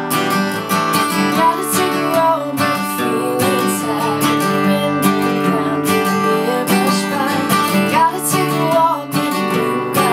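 Steel-string acoustic guitar strummed in a steady rhythm, with a woman's voice singing a melody over it in phrases a few seconds in and again near the end.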